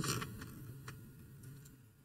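A few faint ticks and light scratches of a paintbrush dabbing acrylic paint onto a painting board.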